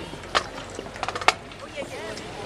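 Scattered sharp clacks, one about a third of a second in and a quick run of four about a second later, over a low murmur of crowd voices.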